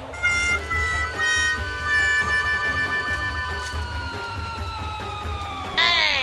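A comic musical sound effect: a few short notes, then one long held note that slowly sinks in pitch, over a low steady hum.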